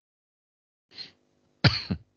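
A single sharp cough near the end, preceded by a faint short throat sound about a second in.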